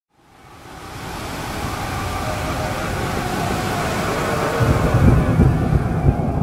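A steady rushing noise swells up out of silence over the first two seconds, with deep rumbling joining in from about four and a half seconds in: a sound-design intro ahead of the music.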